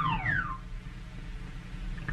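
A whistle-like tone sliding steeply down in pitch, the way a cartoon sound effect does, dying away about half a second in. Then only the old soundtrack's low hum and hiss.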